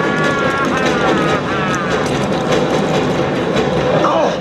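A loud, dense film sound mix inside a hijacked aircraft in flight: a steady roar, with wavering, gliding tones over it in the first couple of seconds.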